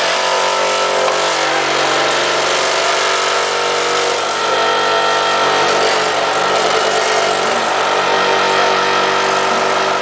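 A vacuum-forming machine's vacuum pump running with a steady, loud hum, drawing the heated thermoplastic sheet down over the mould.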